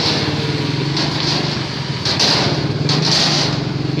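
Small motor scooter engines running at low speed as scooters ride slowly onto a wooden ferry deck. The steady engine hum is broken by a couple of short hissing bursts.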